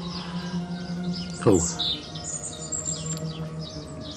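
A voice singing long held notes with sharp falling slides, as soundtrack song. Birds chirp in the background, most clearly a couple of seconds in.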